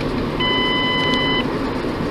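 Car dashboard warning chime inside a moving car: one steady electronic beep about a second long, repeating every two seconds or so, over steady road noise.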